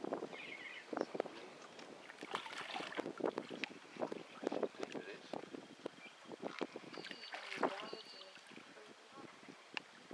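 Faint background voices mixed with scattered light knocks and clicks, and a few brief high chirps between about seven and eight seconds in.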